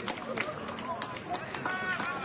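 Broadcast commentary speech over the stadium's open-air ambience, with scattered sharp claps from the crowd.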